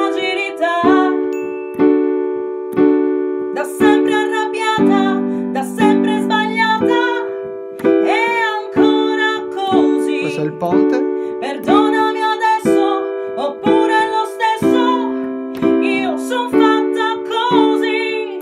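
Digital piano playing simple three-note block chords from the song's G, C, D and E minor, struck about once a second and left to ring. A woman sings the melody over them.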